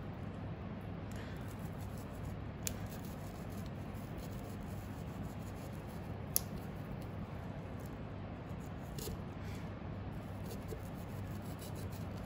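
Knife cutting along the backbone of a raw hare saddle: faint scraping and rubbing with a few light clicks, the sharpest about six seconds in, over a steady low background hum.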